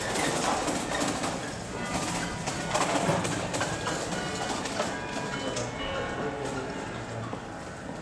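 Street sound: voices mixed with some music and scattered clicks and knocks.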